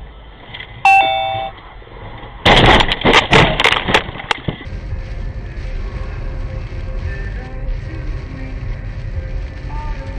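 A two-note chime about a second in, the second note lower, then about two seconds of loud clattering bursts, then steady road noise inside a car driving on a wet road.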